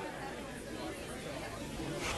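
Faint background chatter and room ambience of a pool hall, with a low steady rumble.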